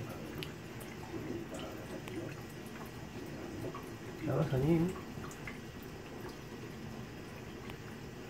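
Thin stream of tap water running from a faucet-mounted Brita filter, trickling and dripping onto cupped wet hands and into a stainless-steel kitchen sink. A brief voice sounds about four seconds in.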